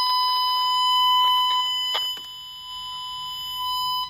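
A Fluke Networks Pro 3000 tone probe sounds a steady, high-pitched tone through its speaker while it picks up the tracing signal on the wire. The tone gets somewhat quieter about two seconds in, with a click there, and grows louder again near the end.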